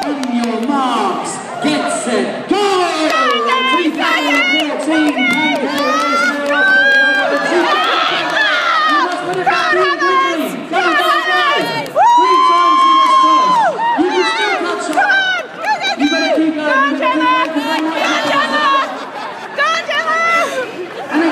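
Crowd of spectators cheering and shouting, many voices overlapping, with one long, loud shout about twelve seconds in.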